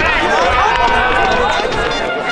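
Footballers' voices calling and shouting across the pitch, several at once, over a low wind rumble on the microphone that drops away near the end.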